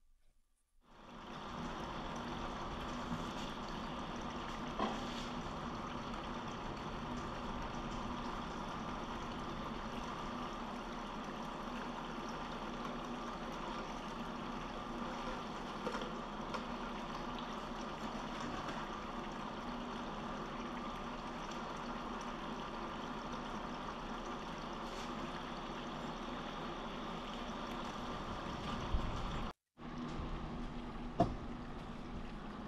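Water running steadily down a Gold Hog Multi Sluice's scrubber mat and spilling into its tub, with a faint steady hum underneath; the water is slowed by the sluice's low pitch of about five and a half degrees. The flow starts about a second in, and a couple of faint knocks come in along the way.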